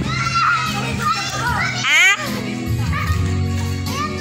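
Children shouting and playing in a swimming pool, with a high rising squeal about two seconds in, over background music.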